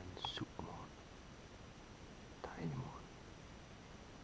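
Quiet whispered speech from a man: two short phrases, one at the start and one about two and a half seconds in, over faint outdoor background.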